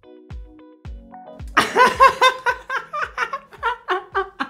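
Background music with a steady beat of about two thumps a second. About one and a half seconds in, a man starts laughing loudly over it in repeated bursts.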